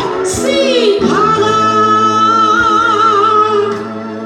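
A woman singing solo into a microphone: a short vocal run, then one long held note that wavers into vibrato near its end, over a steady low note underneath.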